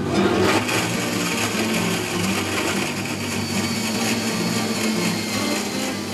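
Countertop blender running steadily, blending a lemon slush.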